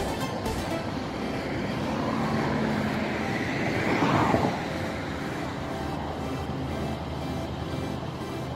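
Background music over the steady running of a Siemens Desiro diesel multiple unit shunting slowly. About four seconds in, a louder swell falls in pitch as something passes close.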